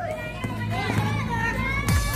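Music mixed with high-pitched shouting and cheering voices.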